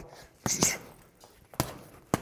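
Boxing gloves punching an Everlast heavy bag: a short hiss about half a second in, then two quick sharp punches landing on the bag near the end.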